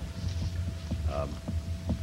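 Steady low electrical hum with a faint, thin high tone above it, under a man's brief hesitant "um" about a second in.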